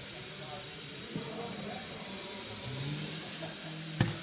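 Electric motor and propeller of a small indoor foam RC plane running in flight, with a steady high whine, inside a large sports hall, over background voices.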